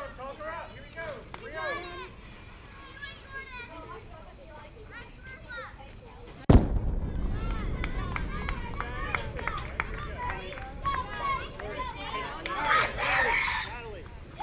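A single loud, sharp knock about six and a half seconds in, from something striking hard near the microphone at a softball game. A steady low rumble follows and lasts to the end, under the chatter of players and spectators.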